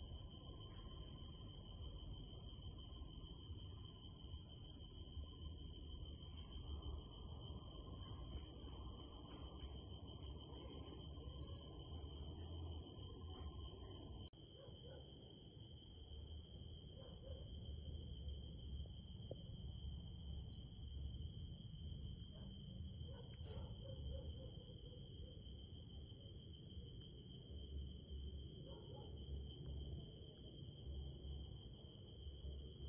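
Faint night chorus of crickets and other insects: several steady high trills, one of them pulsing rapidly, over a low rumble. The mix changes abruptly about 14 s in, where the highest trill drops out.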